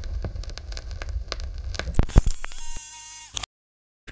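Crackling, static-like noise with scattered clicks over a low rumble. Near the end a few steady high tones sound briefly before everything cuts off abruptly about three and a half seconds in.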